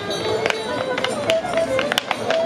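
Clogs striking a wooden dance board in a rapid series of sharp taps as two dancers perform an English step-clog routine, over a folk tune.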